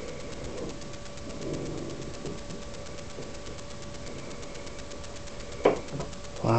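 Handling and movement noise from a handheld camera being carried about: faint irregular rustling over a steady thin hum, with one sharp knock near the end.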